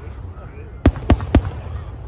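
Fireworks exploding: three sharp bangs in quick succession about a second in, over a continuous low rumble from the display.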